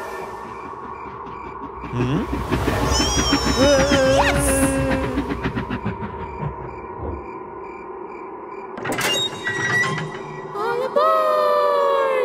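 Cartoon sound effects of a train pulling into a station: a low rumble that starts about two seconds in, with a high, falling squeal near its height, over background music. A sharp clunk near nine seconds follows as the train's doors open.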